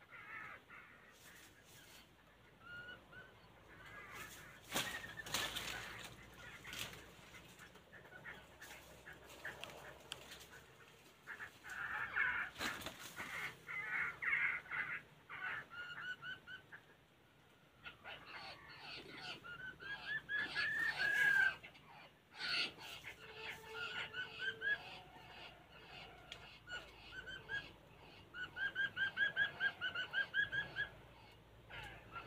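Wild songbirds calling in a bamboo thicket: short chirps and rapid runs of repeated notes, loudest twice in the middle and again near the end. A few brief rustles or knocks come in between.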